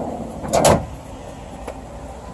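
MorRyde slide-out cargo tray being pushed into a fifth wheel's pass-through storage bay, with a short loud clatter about half a second in as it runs home, and a faint click near the end.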